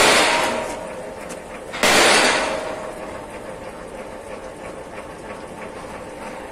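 Threaded rebar foundation bolts set down on a steel rack: two sharp metal clanks, one at the start and one about two seconds in, each ringing briefly as it fades. Faint small clicks of handling follow.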